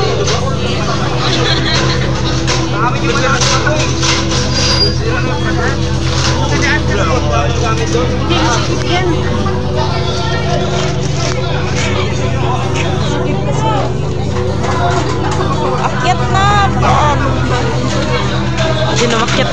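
Fire truck engine running steadily as a low, even drone while it pumps water to the hoses, with a crowd talking and calling out over it.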